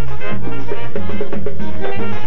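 Latin dance band playing an instrumental passage: trombones carry the melody over a bass line moving in steady held notes, with percussion keeping a regular beat.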